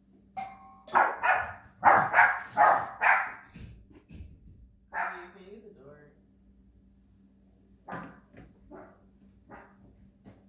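A doorbell chimes once, then a dog barks: a quick run of about six loud barks, a single bark about five seconds in, and a few quieter barks near the end.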